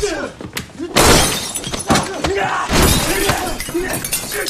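Movie fight sound effects: glass shattering and breaking with heavy impacts, about a second in and again near the end, mixed with men's grunts and strained cries.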